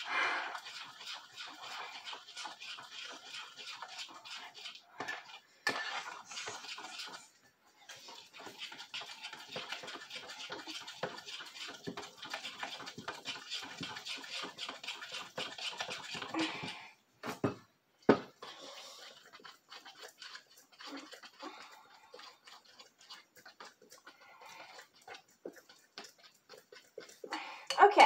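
Thick jello slime mixture being stirred and squished by hand in a bowl: a dense run of small wet clicks and squelches, thinner and fainter after about 17 seconds.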